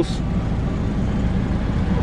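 Fiat Fiorino's 1.4 Flex four-cylinder engine idling steadily, a low rumble heard from inside the cab.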